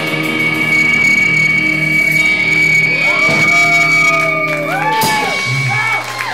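A live rock band's electric guitars ring out in held notes under a steady high tone. In the second half, pitches slide up and down in long arcs as the song winds down.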